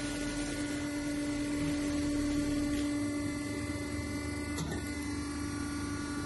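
Ravaglioli 400 V tractor tyre changer running, its motor giving a steady hum at one fixed pitch while the chuck moves, with a faint click near the end.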